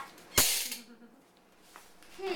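A single sharp knock about half a second in, with a short ring-out, as of a hard object striking the table or the chair.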